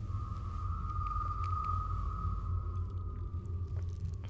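Eerie film sound design: one high held tone that swells in the middle and sinks slightly in pitch as it fades, over a steady low drone.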